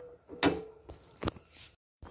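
Three short knocks about 0.4 s apart, the first the loudest with a brief ring: a plastic slotted spatula knocking against the metal pan of chile sauce.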